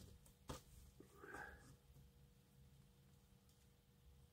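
Near silence, with a faint click about half a second in and a brief soft scuff a second later as small plastic model-kit parts are handled and fitted together.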